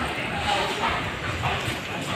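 People's voices talking in the background over street noise.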